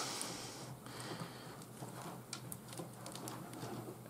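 Faint rustling and a few light ticks of hands working three-strand rope, tightening an overhand knot in the strands and handling the rope.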